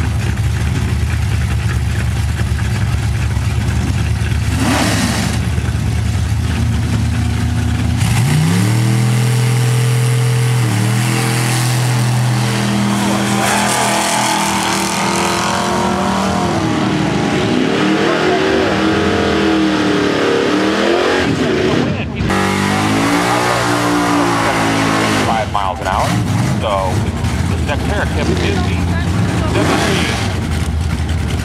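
Two drag cars, a 1973 Plymouth Duster and a 1968 Chevy pickup, idle with a heavy rumble on the starting line, then launch at full throttle about eight seconds in. Their engine notes rise, drop at each gear change and rise again as they run down the strip, settling back to a lower engine rumble near the end.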